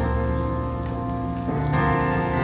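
Worship music on keyboard: sustained, bell-like chords held steady, changing to a new chord about one and a half seconds in.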